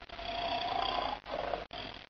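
A lion roaring once, for about a second, then trailing off in two shorter, softer bursts.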